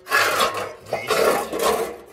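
Bare pressed-steel sill repair panels scraping against each other as one is slid onto the other, in two scraping bursts, the second about a second in and longer.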